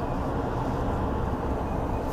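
Steady low rumble of road and engine noise heard from inside a moving vehicle.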